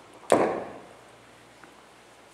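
A single sharp knock about a third of a second in, fading out over about half a second.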